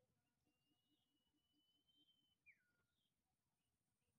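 Near silence, with one faint, long, high whistled note that rises slightly and ends in a quick falling sweep about two and a half seconds in.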